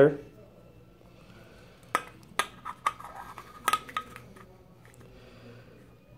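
Steel can seam micrometer clicking and tapping against the rim of an aluminium beverage can as it is set onto the seam: a handful of light metallic clinks, some with a brief ring, from about two seconds in to past four seconds.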